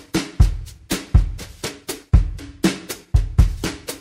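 Background music: a steady drum-kit beat, bass drum alternating with snare hits.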